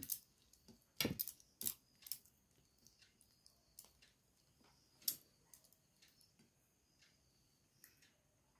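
Faint scattered clicks and small wet smacks of someone eating rice and kadhi by hand: fingers working the food on the plate and chewing, with sharper clicks about a second in and again near five seconds.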